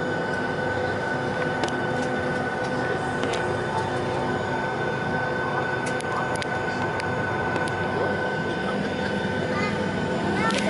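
Steady cabin noise inside a Boeing 757-200 taxiing with its engines at idle. A constant engine drone carries a steady high whine, with a few faint clicks.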